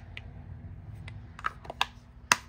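Plastic soap case handled: a couple of light clicks as it is opened, then a quick run of sharper plastic clicks and taps near the end as the two halves are pushed shut.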